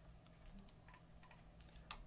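Near silence: room tone with a few faint, scattered clicks of a computer keyboard.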